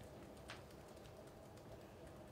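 Near silence: quiet room tone with a few faint clicks of laptop keys being pressed, the clearest about half a second in.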